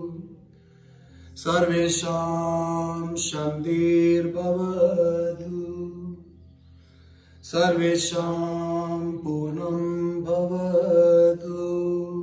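A man chanting a closing yoga prayer (mantra) in long held phrases, two of them about a second apart.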